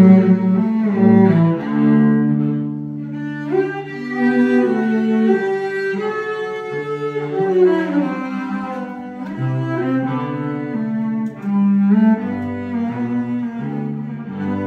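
Unaccompanied cello played with the bow: a melody of held notes moving from one pitch to the next every second or so.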